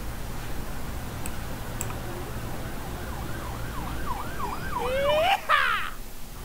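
Electronic intro sound effect for an animated logo: a warbling tone that swoops up and down in pitch about three times a second, growing louder. Near the end comes a rising glide, then a quick cluster of falling pitch sweeps, the loudest part, all over a low steady hum.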